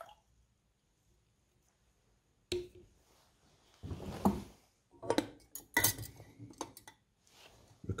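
Knocks and clinks of lab apparatus being handled: a sharp knock about two and a half seconds in, then a run of clatters and clicks. The clatters come as a glass measuring cylinder is set aside and a wooden lid with a thermometer is fitted onto a copper calorimeter can.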